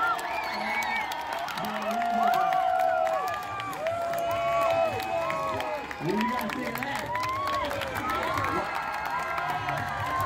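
Crowd of spectators cheering and shouting, many voices overlapping, with scattered clapping.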